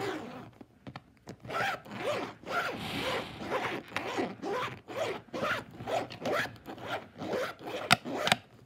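Rhythmic, zipper-like rasping strokes made by rubbing or scratching, about three a second, each with a squeaky rise and fall in pitch. They start about a second in, after a quieter moment.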